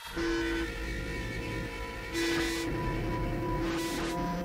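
A quiet passage in a metal track: a train horn sounds in short blasts, a chord of steady tones repeating every second or two, with rumble and hiss under faint ambient backing.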